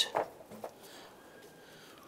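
A couple of light clicks as the battery hold-down wedge block is set into place against the base of the battery, then quiet room tone.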